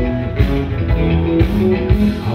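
Live country band playing an instrumental passage: guitars over bass and drums.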